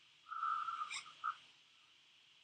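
An alert tone with a level pitch: one held note of about half a second, a click, then a short blip of the same note. It is most likely an alert from the video-call software.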